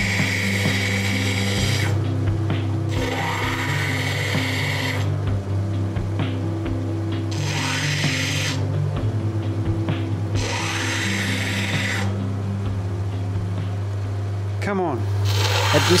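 Lapidary grinding machine running with a steady motor hum while a rough opal is pressed against its coarse wet wheel. A hissing grind comes and goes every couple of seconds as the stone goes onto the wheel and comes off it, taking the top layer off the stone to reach the colour bar.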